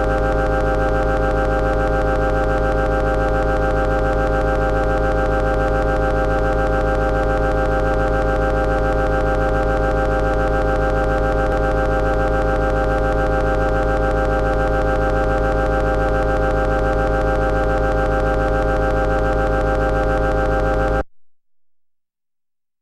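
A steady electronic drone: one unchanging chord of many held tones over a deep low note, which cuts off suddenly near the end, leaving silence.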